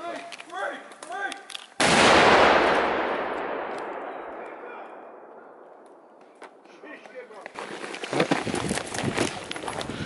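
An explosive breaching charge detonating about two seconds in: one sudden loud blast followed by a long rushing noise that fades over about five seconds.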